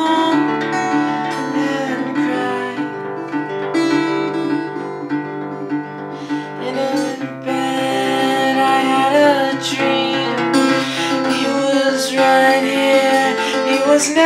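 Acoustic guitar strummed while a man sings along, holding long notes with no clear words; a sad song, in the player's own words.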